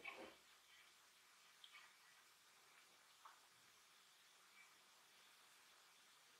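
Near silence: faint room tone with a few soft, light ticks and rustles of cord being worked by hand around a metal dreamcatcher hoop, the clearest right at the start.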